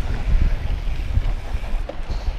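Wind rushing over the microphone with a low, uneven rumble from a mountain bike rolling fast down a dirt singletrack.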